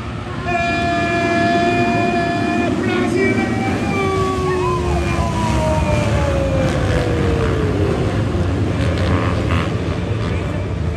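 A pack of motocross bikes racing off the start: engines revving, with one high steady note held for about two seconds, then several engines sliding down in pitch as the bikes accelerate, shift and pass.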